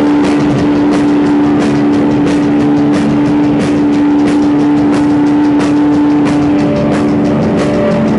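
Hardcore punk band playing loud in a small club: a distorted electric guitar drones on one held note for about six seconds, then moves to a higher note near the end, over crashing drums and cymbals.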